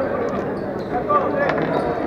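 A handball bouncing on an indoor court floor, a few sharp knocks with the strongest about one and a half seconds in, under the steady chatter and shouts of players and spectators in a large sports hall.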